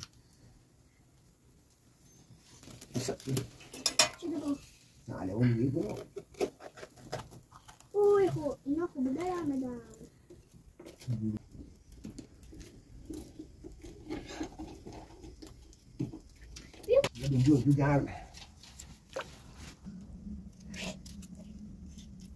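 Knife cutting raw vegetables by hand: a run of short sharp clicks and scrapes as a tomato, an onion and a potato are peeled and sliced. A few short voiced sounds come between the cuts, about a third of the way in, near the middle and near the end.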